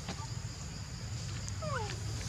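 A monkey gives a short call that falls in pitch near the end, over a steady high drone of insects.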